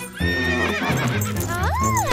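Horse whinny sound effect, a high call that wavers downward, over background music, followed near the end by a rising-and-falling whistling glide.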